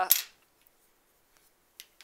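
One sharp click from small metal embroidery scissors just after the start, followed by a few faint small clicks.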